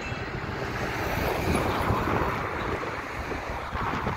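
Road traffic passing close by: a steady rush of tyres and engines that swells slightly in the middle, with wind on the microphone.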